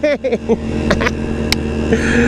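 Two-stroke Vespa scooter engine running at a steady cruise while ridden, with one sharp click about one and a half seconds in.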